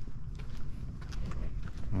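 Footsteps on concrete, a few irregular light steps, over a steady low rumble.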